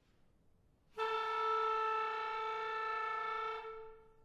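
Solo clarinet playing one long held note. It starts about a second in, holds steady for nearly three seconds, then is cut off near the end and rings briefly in the hall.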